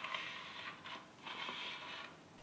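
Faint handling noise: two soft scraping rustles, each about a second long, as a hand moves over the opened rework station's case.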